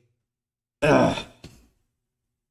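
A man's heavy sigh with a short voiced groan, about a second in and lasting well under a second.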